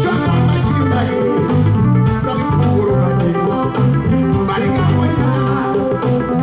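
Live band playing, with guitar and a bass line over a steady beat.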